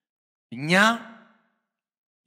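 A man's voice makes one short, drawn-out voiced sound, sigh-like, about half a second in, trailing off after under a second.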